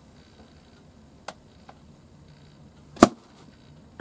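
Quiet room tone with a faint click about a second in and one sharp knock near the end.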